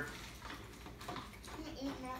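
A lull with faint spoon-and-bowl sounds as people eat cereal from plastic bowls at a table. The tail of a voice fades at the start, and a brief faint voice comes near the end.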